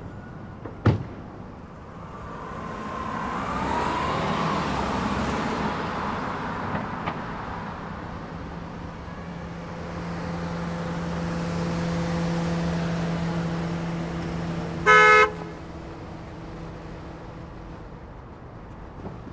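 A car door shuts with a sharp thud about a second in, then car noise swells and fades as vehicles move on the road, the second one a Cadillac CTS coupe humming steadily as it drives up. Near the end it gives one short, loud toot of its horn.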